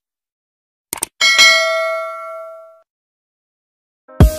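Quick mouse-click sound effects about a second in, then a single bright bell ding that rings out for about a second and a half: the sound effect of an animated subscribe-button overlay.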